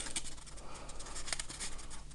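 Sheet of origami paper rustling and crinkling softly as a flap is folded back against itself by hand, with a few small ticks.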